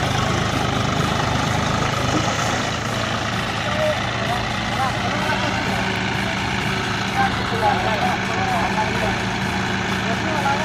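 John Deere 5050 D tractor's three-cylinder diesel engine running steadily while the tractor is bogged down in deep mud. Men's voices call out over it from about four seconds in.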